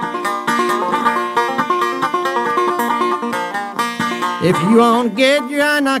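An old-time string band of banjo, fiddle and acoustic guitar plays a lively tune. A man's singing comes in near the end.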